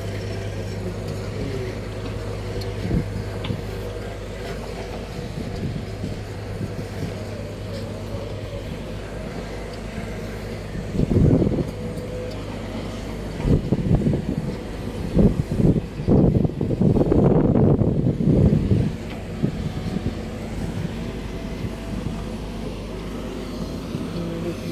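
Heavy diesel earthmoving machinery running steadily with a low hum. About halfway through comes a series of loud, rough rumbling bursts lasting several seconds.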